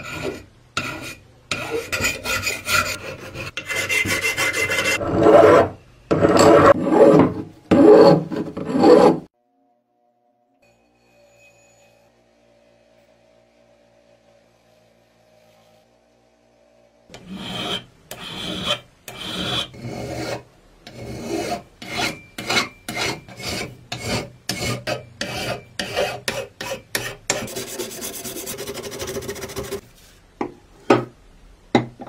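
Hand file rasping over a rusty steel tube held in a vise, in repeated strokes that stop for several seconds partway through and then resume.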